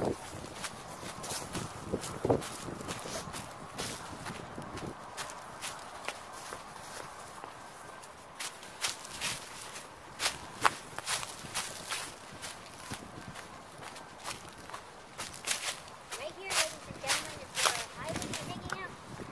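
Footsteps of a person and two dogs crunching through dry fallen leaves, in irregular steps that get louder about halfway through and again near the end.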